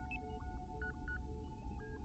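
Electronic starship bridge computer sound effects: a steady two-note hum under a busy pattern of short beeps and chirps at several pitches, several a second.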